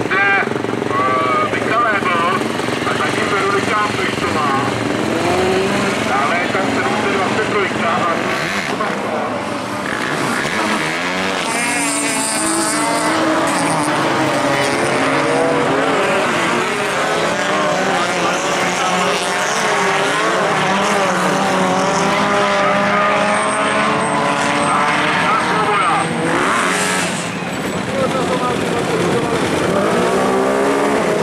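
Several autocross race cars' engines revving hard, their pitch rising and falling again and again as the drivers shift gears, with more than one car heard at once.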